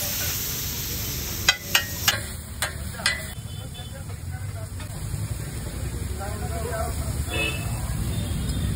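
Metal spatula scraping and knocking on a large flat iron griddle while tomato-onion masala sizzles on the hot plate. About five sharp clanks come in quick succession one and a half to three seconds in; after that the sizzling goes on more quietly.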